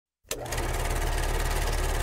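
A small machine running with a rapid, even mechanical clatter that starts suddenly with a click about a quarter second in.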